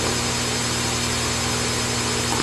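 Steady mechanical whir with a low hum, constant throughout, like a small electric motor or fan running.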